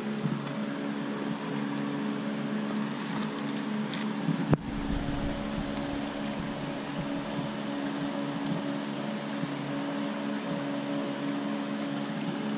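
Steady hum of running machinery, holding several even low tones, with one sharp knock about four and a half seconds in.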